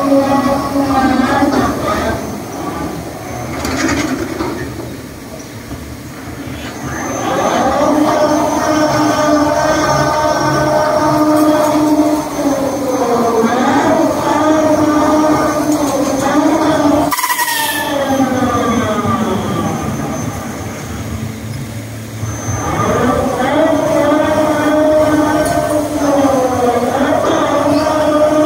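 Top Spin amusement ride running: its drive machinery whines in long tones that rise and fall in pitch as the gondola and arms speed up and slow down. A sharp knock comes a little past halfway, followed by a falling whine.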